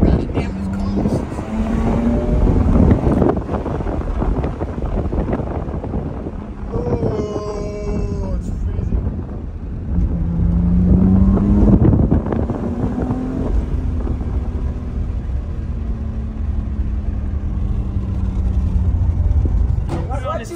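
BMW M4 Competition's twin-turbo straight-six heard from inside the cabin while driving, with a steady low rumble. Its note rises as the car accelerates, briefly about two seconds in and again for a longer pull about ten seconds in.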